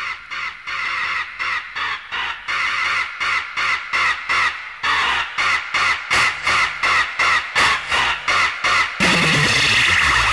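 Hardcore techno breakdown: the kick drum and bass drop out, leaving a harsh, high synth stab pulsing about three times a second. Near the end a fuller, louder synth layer comes back in.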